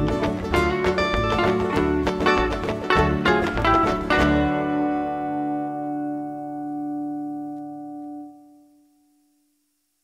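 Closing bars of a country song played on guitar with banjo and ukulele strumming the rhythm; about four seconds in the playing stops on a final chord that rings and fades away over about four seconds.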